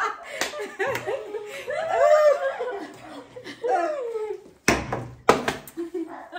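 Several people laughing. Near the end come two sharp knocks about half a second apart.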